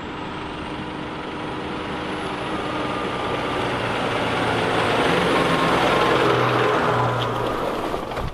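New Holland T7.230 tractor's six-cylinder diesel engine running steadily as it tows a loaded trailer of carrots. It grows louder as the tractor approaches and passes close by, then eases off slightly near the end.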